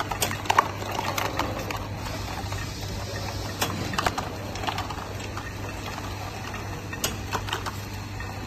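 Candy counting machine running with a steady low hum, with irregular clicks and knocks as counted gummy candies drop into plastic cups and the cups are set down and swapped on its steel tray.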